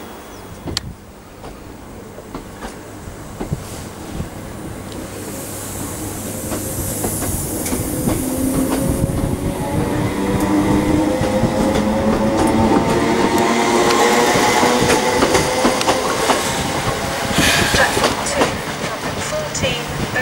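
Class 321 electric multiple unit accelerating away from the platform, growing louder over the first ten seconds. Its traction motors whine and slowly rise in pitch as it gathers speed, and its wheels click over the rail joints.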